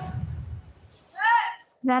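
Film trailer soundtrack: a rush of noise fading away over the first second, then a short high-pitched vocal sound. Speech begins near the end.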